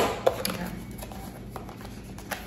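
Handling of a nail drill's packaging as it is opened: a sharp knock right at the start, a smaller one just after, then faint rustling and tapping.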